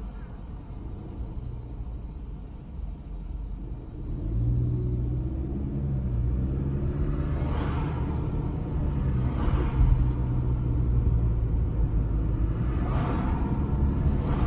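Car engine and road noise heard from inside the cabin: a low idling rumble, then a steady drone that grows louder about four seconds in as the car pulls away and picks up speed. A few brief swells of wider noise come later.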